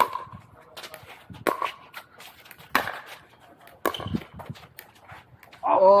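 Pickleball rally: paddles striking the plastic ball in a string of sharp pops about a second apart. Near the end a man shouts "oh, oh".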